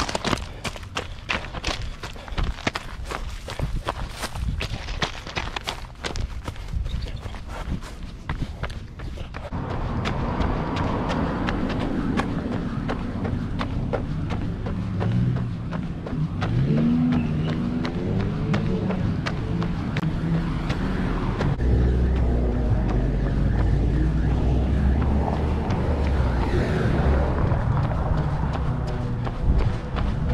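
Running footsteps crunching quickly on railway-ballast gravel for roughly the first ten seconds, then a steadier wash of street noise with cars passing and low rumble as the run continues on pavement.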